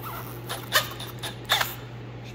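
Cordless drill turning a chamfer bit against the edge of a drilled hole in a metal intake housing, chamfering it before the hole is tapped for a pipe-thread nitrous fitting. There are two short, sharp cutting sounds, about three-quarters of a second and a second and a half in.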